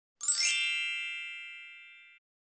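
An intro logo chime: a bright ding about a quarter second in, with a quick upward shimmer, that rings on with many high tones and fades away over about a second and a half.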